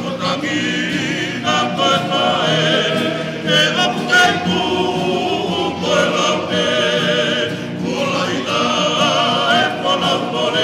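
A choir of many voices singing a song together in harmony, the held notes wavering with vibrato.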